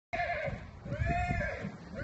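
A horse whinnying twice: a short call at the start and a longer one about a second in that rises and falls in pitch, over low thumps.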